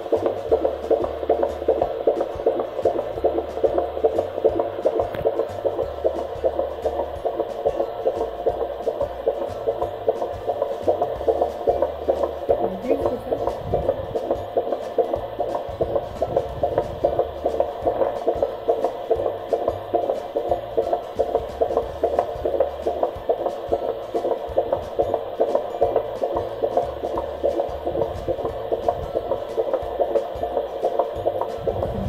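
Fetal heartbeat picked up by a handheld Doppler probe on a full-term pregnant belly, heard through the device's speaker as a fast, regular pulse.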